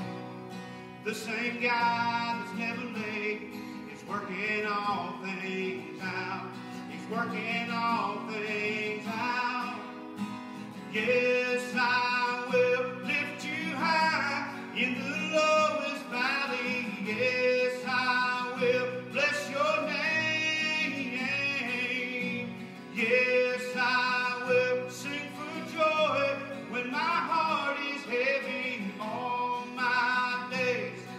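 A man singing a praise and worship song, accompanying himself on strummed acoustic guitar.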